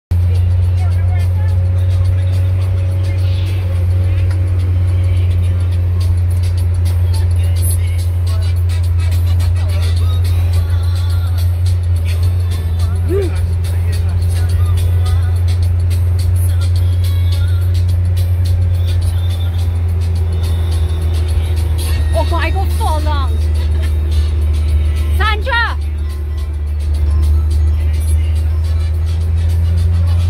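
Steady low drone of a minibus engine and road noise heard from inside the cabin, with music playing and a few brief voices over it.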